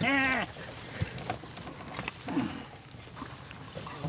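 A person's drawn-out, quavering laugh at the start and a short vocal sound a little past halfway. Between them, faint scraping of garden rakes through loose ground stump chips and soil.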